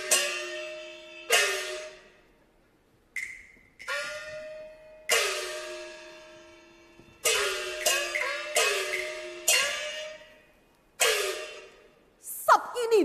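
Cantonese opera percussion: a gong struck about ten times at uneven spacing, each stroke ringing out with its pitch bending just after the hit. A sharp, higher click comes about three seconds in.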